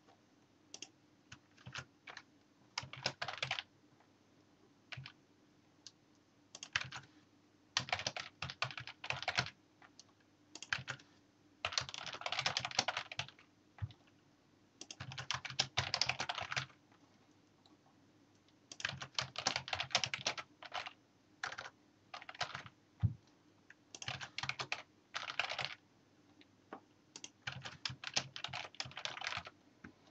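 Typing on a computer keyboard in about a dozen short bursts, each a word or two long, with brief pauses between them.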